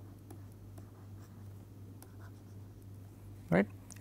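Stylus scratching and tapping lightly on a pen tablet while handwriting, a scatter of faint ticks over a steady low hum.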